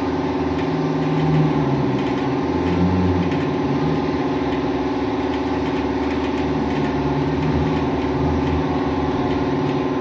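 Air-powered orbital sander running against the painted side panel of a horse trailer, sanding it down for refinishing: a steady machine hum that holds an even level throughout.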